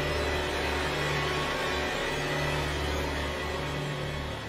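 A low, rumbling suspense drone that swells and fades in pulses, over a steady hiss: horror-film sound design.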